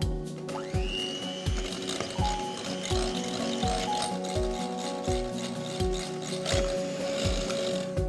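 Background music with a steady beat over an electric hand mixer whirring as it whips coconut cream in a glass bowl; the mixer's whine rises as it starts, just under a second in, then holds steady.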